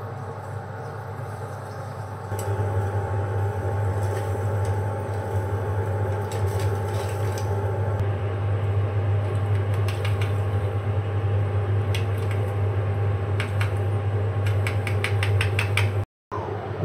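Steady hum of a fume hood's extraction fan, getting louder about two seconds in, with scattered light clicks and taps and a quick run of clicks near the end.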